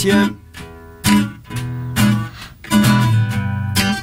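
Nylon-string classical guitar strummed with a pick. It plays a bass note followed by a muted down-up strum in the change to an E7 chord, about one stroke a second, with the chord ringing between strokes.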